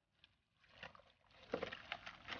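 Shovel sloshing and stirring through a watery slurry of lime and soil in a foundation pit, the water flooding the fill so every gap is filled. Irregular splashes build up, loudest about halfway through.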